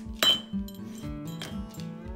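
A glass mug knocked over by a dog onto a hard floor: a loud clink with a short ring about a quarter second in, then a lighter knock just after, over background acoustic guitar music.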